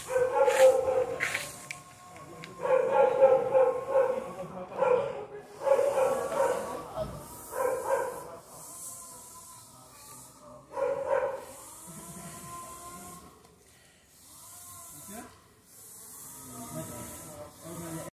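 A dog barking in loud runs of barks through the first eleven seconds or so, then only fainter sounds for the rest.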